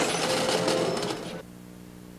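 Slot machines clattering and ringing in a busy casino. The sound cuts off suddenly about one and a half seconds in, leaving a steady electrical hum.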